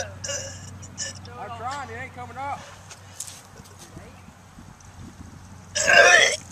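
A man gagging and retching: a few short voiced heaves in the first half, then one loud, harsh retch near the end as he throws up the juice he has just gulped down.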